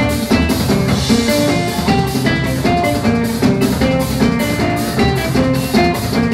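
Live band playing an instrumental passage: guitars over drums with a steady beat of about three strokes a second.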